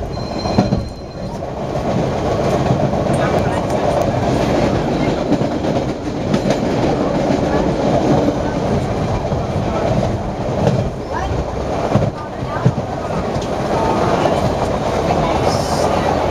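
MBTA Orange Line subway car running at speed, heard from inside the car: a steady rumble of wheels on the rails, with the clicks of rail joints passing under it.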